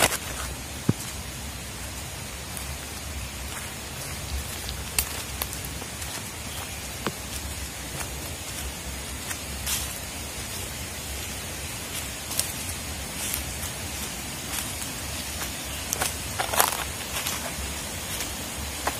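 Steady rushing of a rocky stream, with a few scattered crunches and rustles of footsteps in dry leaf litter.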